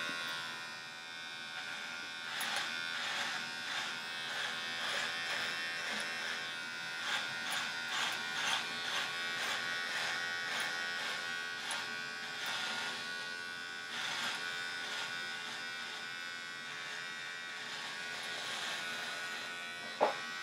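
Electric shaver buzzing steadily as it is worked through a thick beard, with irregular crackles as it cuts the hair.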